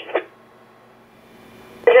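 Scanner loudspeaker playing two-way radio traffic: a digital voice transmission ends just after the start, then a faint hiss for about a second and a half, then an analog radio voice begins near the end.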